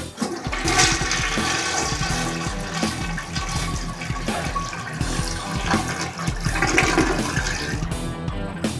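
Toilet flushing: water rushes in and swirls round the bowl, then drains away, over background guitar music.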